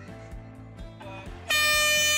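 A handheld canned air horn gives one loud, steady blast starting about one and a half seconds in, sounded as the start signal for a group bicycle ride. Background music plays underneath.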